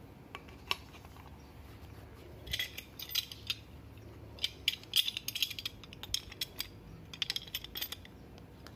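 Adjustable spanner and pipe wrench being handled and set onto a PVC pipe fitting: quick clusters of small metallic clicks and clinks, starting about two and a half seconds in and recurring to the end.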